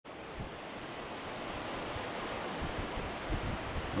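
Steady rush of surf and wind, slowly swelling, with a few brief low buffets of wind on the microphone.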